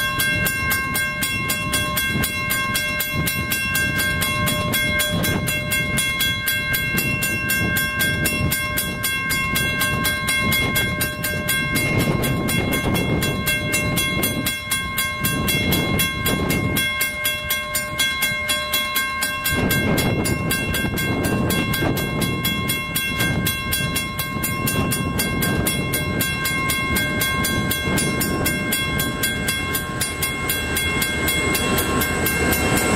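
Canadian Pacific freight train's diesel locomotives approaching, their engines and wheels making a low rumble that swells and dips as they draw closer. A steady high tone with overtones and a fast ticking sounds over it throughout.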